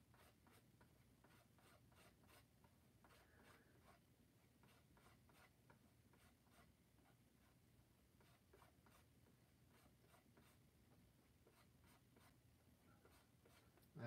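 Very faint, irregular scraping and tapping of a palette knife mixing white into blue acrylic paint on a palette, a few strokes a second, in near silence.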